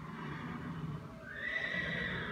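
A donkey braying: a low, rough part first, then a louder, higher-pitched held note from about halfway through.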